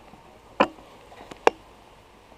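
Two sharp knocks about a second apart, with a faint tick between them, over quiet room tone.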